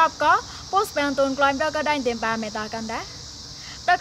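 A woman speaking in a steady presenting voice, with a short pause about three seconds in, over a faint steady high hiss.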